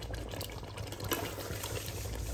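Chicken and tomato masala frying in a metal pot over a high flame: a steady sizzle and bubble with small scattered crackles.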